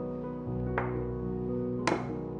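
Soft background piano music, with two short knocks about a second apart, the second louder and sharper.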